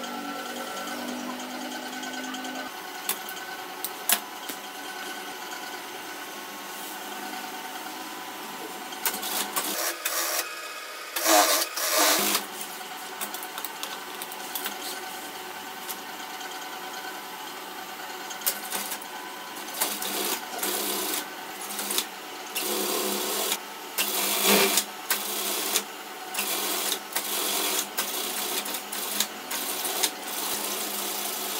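Brother industrial sewing machine stitching in a series of short runs, most of them in the second half, over a steady hum.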